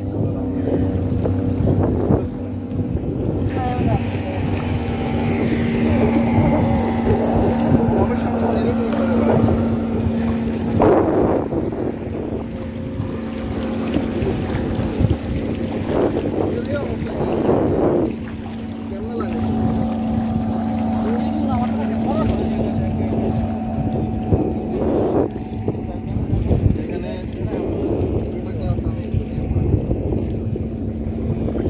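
Steady drone of a boat engine running on the water, with wind and the wash of the sea, and a few brief voices about a third and half way through.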